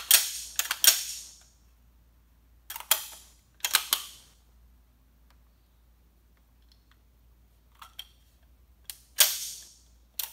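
SKS rifle's action being function-tested by hand after reassembly: the bolt is racked back and let snap home, giving a series of sharp metallic clacks in several separate groups. The loudest come at the very start and a little before the end.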